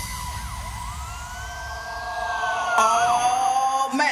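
Rawstyle hardstyle breakdown: the kick drum drops out and siren-like synth tones glide up and down over a steady held note, with a long sweep falling from high to low. The music builds again near the end as the beat returns.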